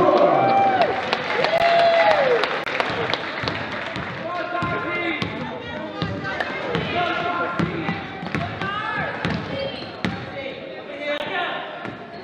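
Basketball bouncing on a hardwood gym floor, repeated short strikes, amid spectators' shouts and cheers that are loudest in the first two seconds.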